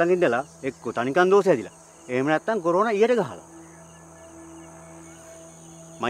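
A steady high-pitched drone of insects in a field, with a low steady hum beneath it. A man's voice speaks over it for the first three seconds or so.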